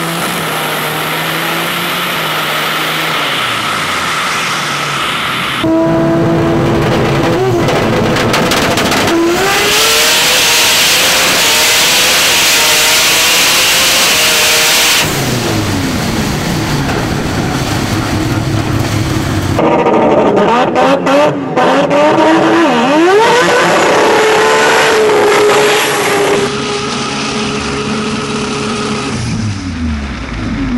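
The turbocharged 20B three-rotor rotary engine of a Mazda6 SP drag car, heard from inside the car, idling and revving hard in several cut-together stretches, its pitch climbing and falling repeatedly. For several seconds near the middle a loud, steady rushing noise covers the engine.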